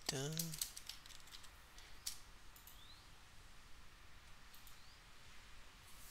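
Faint, scattered computer keyboard keystrokes: a handful of separate clicks spread over several seconds.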